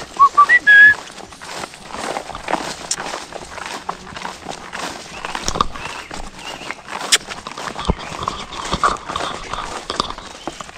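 A few quick, high chirping calls right at the start. After them comes irregular rustling and footsteps through long pasture grass as a horse walks up.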